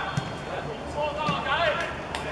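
Players calling and shouting to one another during open play in a football match, their voices carrying across the pitch.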